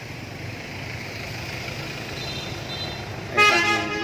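Steady outdoor background noise, then a vehicle horn sounds once for about half a second near the end.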